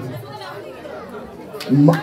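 Low murmur of audience chatter, with a man's voice starting again near the end.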